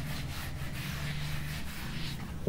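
Whiteboard duster rubbing across a whiteboard, wiping off marker writing in a steady run of strokes.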